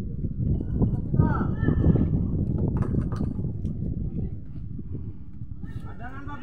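Indistinct voices at an outdoor football match, with a voice rising and falling about a second in and again near the end. They sit over a dense, uneven low rumble that is loudest in the first half.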